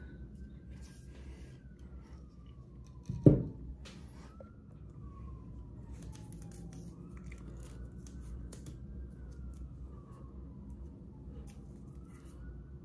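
A faint siren wailing, its pitch slowly rising and falling in long sweeps, under the small clicks and rustle of black hockey tape being wrapped onto a hickory golf club grip. A single sharp knock about three seconds in is the loudest sound.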